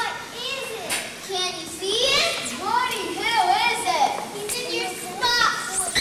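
A group of young children's voices calling out and chattering at once, high-pitched and overlapping, with no single clear line of speech.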